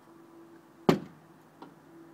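A single sharp knock on the wooden playhouse's OSB boards about a second in, then a fainter tap about half a second later, over a faint steady hum.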